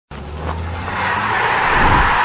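Logo-sting sound effect: a low steady hum overlaid by a rush of noise that swells into a whoosh, loudest near the end.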